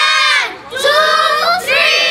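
A group of children shouting together in unison: two long, high-pitched shouts, the first ending about half a second in and the second starting just under a second in.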